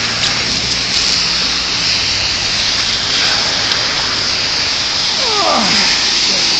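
Loud steady rustling hiss of a handheld camera being handled, with a glove or sleeve rubbing over its microphone. A short falling squeak comes near the end.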